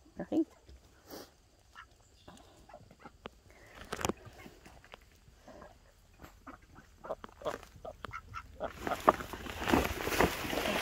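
Domestic ducks giving scattered short quacks, a louder one right at the start and a quick run of them late on. Near the end a rustling noise builds up.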